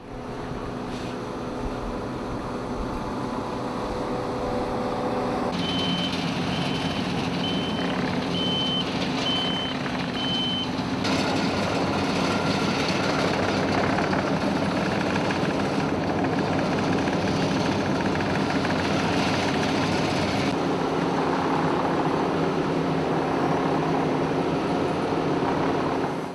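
Asphalt paving machinery working: the diesel engines of a paver and a tipper truck run steadily. Partway through, a reversing alarm beeps about seven times at an even pace.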